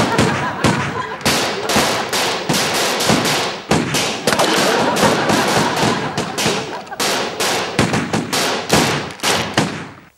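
Handgun gunfire from several pistols: a long, unbroken volley of sharp shots, several a second and irregular, that stops abruptly near the end.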